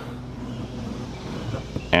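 Round screwdriver shaft rubbed up and down the sharp corner of a cellular PVC column wrap, easing the edge into a round-over: a soft scraping over a steady low hum.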